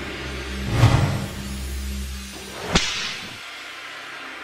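Logo-reveal sound effects: a whoosh with a deep low hit about a second in, then a sharp whip-like swish near the end, after which the sound drops to a quieter ambient background.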